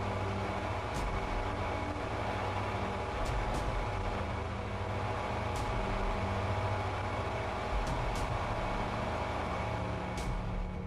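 A steady low rumbling drone with faint held tones, broken by a few soft clicks.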